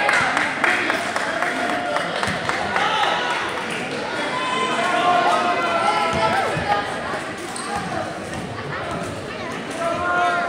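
Spectators chattering in a school gym, with a basketball bouncing on the hardwood court a few times as a player readies a free throw.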